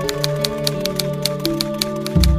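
Rapid typewriter keystroke clicks, about six a second, over slow ambient music with sustained tones.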